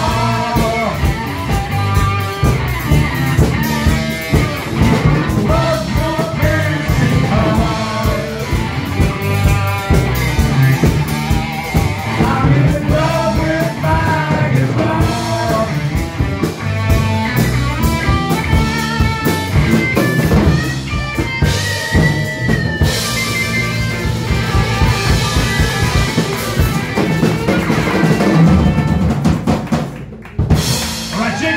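Live rock band playing with drum kit and electric guitars. No words are sung; a melodic lead line bends up and down in pitch over a steady beat.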